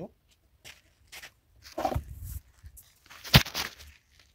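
Handling noise from a phone camera being picked up and moved in close: a few light scuffs and rubs, then a sharp knock a little over three seconds in, the loudest sound.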